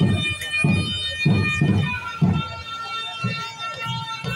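Traditional outdoor music: wind instruments holding long, steady high notes over low drum beats that come about every half second.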